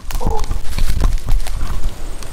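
Handling noise from a jostled action camera: irregular knocks and clatter over a low rumble, with a brief pitched squeak about a quarter of a second in.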